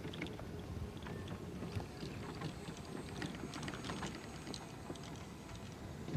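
Low, steady rumble of wind on the microphone outdoors, with a few faint small ticks.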